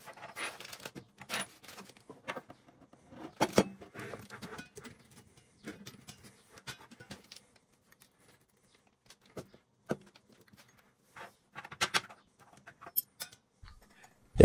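Small metal clinks and clicks with plastic packaging rustling as the chrome mixer tap and its brass fittings are handled and put together on a worktop. The sounds come in scattered short bursts, with a quiet gap midway.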